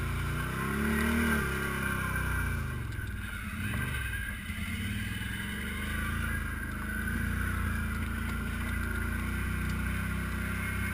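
ATV engine running as the quad climbs a rocky trail. The revs rise about a second in, fall away to a low around four seconds, then run steady.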